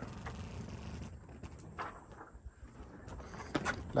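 Faint, low hiss and rumble of a sailing yacht barely moving on a calm sea, with a few soft knocks.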